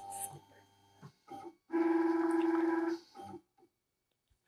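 Atezr L2 diode laser engraver's stepper motors homing (zeroing) after power is restored: a steady whine for just over a second, starting about two seconds in, with a few brief whirs before and after it.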